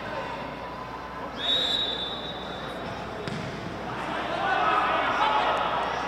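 Indoor futsal court sound: ball thuds and shoe noise on the court, with a referee's whistle blown once, a single steady blast of about a second and a half, starting about a second and a half in. Voices shouting rise near the end.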